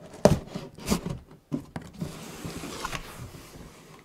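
Cardboard box being opened by hand: a few sharp taps and knocks, the loudest about a quarter-second in, then about a second and a half of cardboard rubbing and sliding as the lid comes open.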